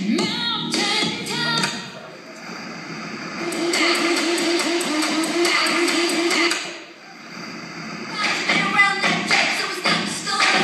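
Recorded dance music, switching abruptly between different clips: a beat-driven passage for the first two seconds, a fast, evenly pulsing clip from about three and a half seconds to nearly seven, then another piece after a brief dip.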